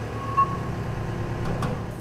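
Steady low hum of idling vehicle engines and machinery in an industrial yard, with one short beep about half a second in and a faint click near the end.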